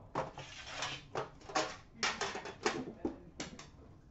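Metal trading-card tins being handled and shifted on a stack, giving a quick series of light knocks and clatters.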